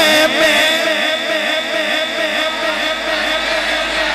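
Instrumental accompaniment between sung verses: a steady held tone with a quick, repeating figure of falling notes beneath it, several times a second.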